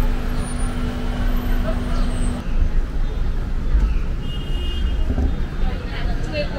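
City street traffic noise: a steady low rumble of passing and idling vehicles, with a steady hum that cuts off a couple of seconds in.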